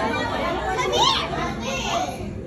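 Children chattering and calling out excitedly, with high-pitched voices that rise sharply about a second in, over the background hubbub of other visitors.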